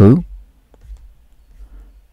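A few faint, sparse clicks from a computer mouse as a web page is scrolled.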